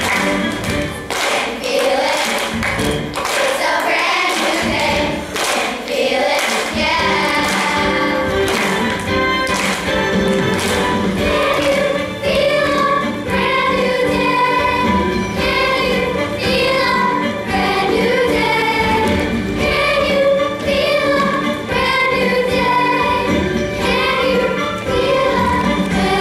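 Children's choir of elementary school girls singing a show tune together over an instrumental accompaniment, with a sharp, regular beat prominent in the first several seconds.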